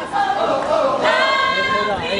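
A gospel choir singing together, the voices holding one long note through the second half.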